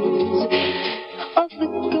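A woman singing a slow, tender ballad over instrumental accompaniment; about halfway through the voice drops away briefly, then comes back with a falling slide in pitch.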